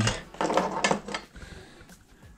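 A few light clicks and knocks of a small marker light being picked up and handled, mostly in the first second, then quieter.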